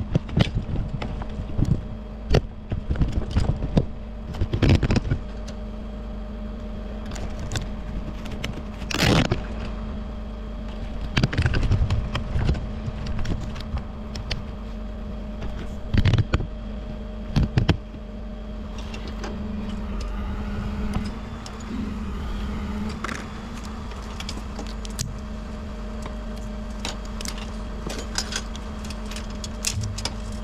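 Bucket truck engine idling steadily underneath, with frequent sharp clinks and knocks of metal tools and cable hardware being handled in the bucket. The loudest knock comes about nine seconds in, and the handling noises thin out in the second half.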